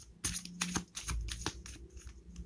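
A tarot deck being shuffled by hand: a quick, irregular run of card snaps and flicks.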